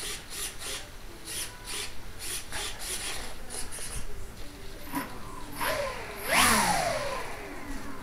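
Rubbing and handling noises, then about six seconds in a brief burst of motor whine from the model B-17's propeller motors that falls in pitch as they spin down.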